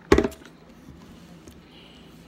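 A short, loud knock about a tenth of a second in, as a plastic drinking cup is set down on the table, followed by a few faint clicks.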